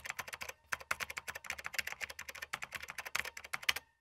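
Rapid typing on a computer keyboard: a dense run of key clicks with a brief pause about half a second in.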